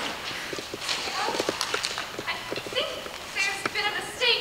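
A quick, uneven run of light clicks and knocks on a theatre stage, followed near the end by voices.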